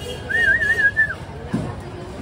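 A high warbling whistle, wavering up and down in pitch about four times over roughly a second, followed by a short low sound about one and a half seconds in.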